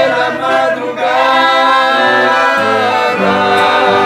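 Live band music: piano accordions and an acoustic guitar playing, with voices singing long held notes.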